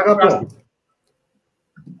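A man speaking Greek for about the first half second, then dead silence until his speech starts again near the end.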